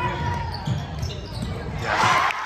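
A basketball bouncing on a hardwood gym floor in repeated low thumps, with voices echoing in the large gym. A louder burst of crowd noise starts right at the end.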